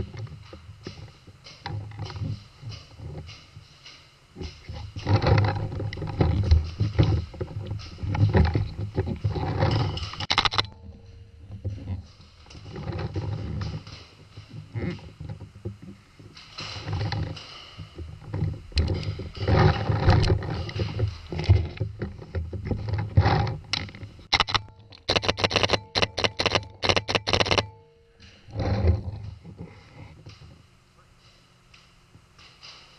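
Paintball game heard from a player-worn GoPro: irregular bursts of clatter and knocks from movement and gear, then near the end a run of sharp cracks about three a second from a paintball marker firing.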